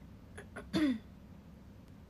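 A young woman clearing her throat with a short cough: a couple of faint catches, then one brief voiced 'ahem' falling in pitch just under a second in.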